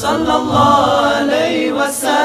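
Male voices singing a nasheed a cappella in harmony, over a low held note, with a short hiss near the start and near the end.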